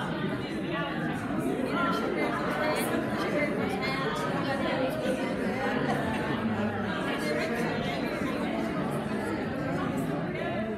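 Many people chatting at once in a large, echoing room. The voices overlap into a steady, indistinct murmur with no single speaker standing out.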